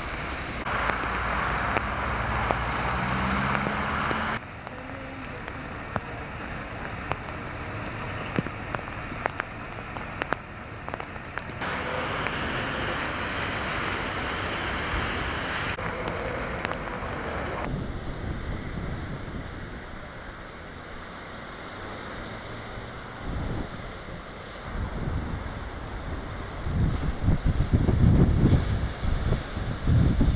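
Road traffic on wet streets, its sound changing abruptly several times. Then, from about two-thirds of the way in, strong gusts of the lodos gale buffet the microphone over surf breaking on rocks, with the gusts loudest near the end.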